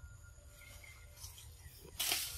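Faint outdoor forest ambience: a steady low rumble with a few faint high chirps and soft clicks.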